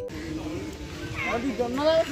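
Playground swing squeaking as it swings back and forth: short, rising-and-falling squeals that come about a second in and again near the end, with voices in the background.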